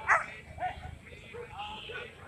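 A dog barking: one loud, sharp bark just after the start, then a quieter one about half a second later, over background voices.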